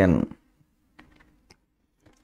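A man's voice trails off at the end of a sentence, then near silence with a faint low hum and a few faint clicks.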